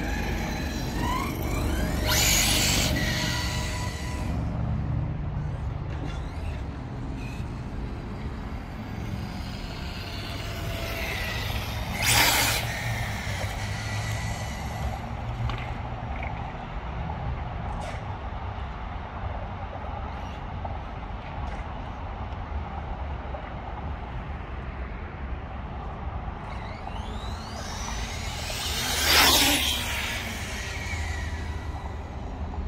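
Electric radio-controlled on-road car (Kyosho GT2-E) driving on asphalt, whizzing past three times, loudest about two seconds in, at twelve seconds and near the end, its pitch sweeping as it goes by. A steady low rumble lies underneath.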